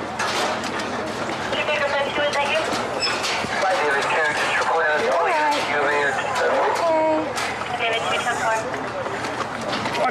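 Several people talking over one another, with no single voice standing out, mixed with scattered handling clicks and knocks.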